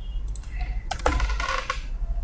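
Computer keyboard keys being typed, a few clicks and then a quick run of keystrokes about a second in, as AutoCAD command options are keyed in at the command line.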